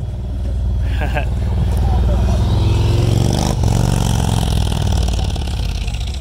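Motorcycle riding past close by, its engine growing louder to a peak about three seconds in and then fading as it moves away.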